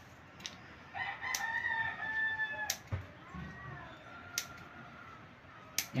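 Scissors snip through a piece of rubber about five times, sharp clicks a second or so apart. A rooster crows in the background, a long call starting about a second in, followed by a fainter second call.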